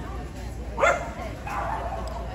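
A dog gives a single short, sharp bark about a second in, over the murmur of voices in the hall.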